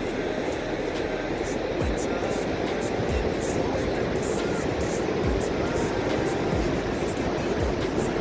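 Steady rush of ocean surf breaking on a flat sandy beach, mixed with wind noise on a phone microphone, with soft low thumps about once a second.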